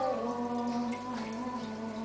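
Music with a singing voice holding one long, gently wavering note.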